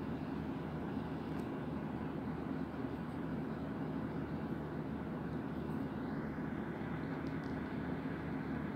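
Steady low background hum that holds at one level throughout, with no clear events in it.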